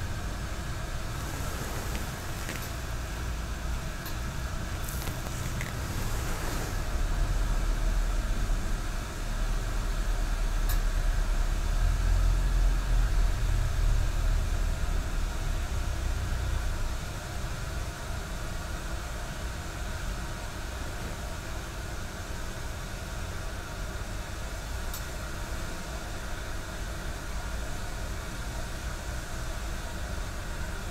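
Soft, brief rustles of a paper sheet being unfolded and handled, over a steady low rumble that grows louder for about ten seconds in the middle and then settles back.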